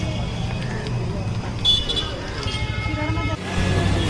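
Busy street ambience: a steady traffic rumble with people talking in the background, and a vehicle horn sounding for about a second and a half near the middle.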